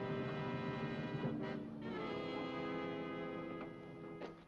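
Background music: an orchestral score with brass holding sustained chords, moving to a new chord about a second and a half in.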